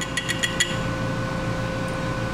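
Liquid poured into a glass Erlenmeyer flask, with a quick run of about five light, glassy ticks in the first second. A steady mechanical hum runs underneath.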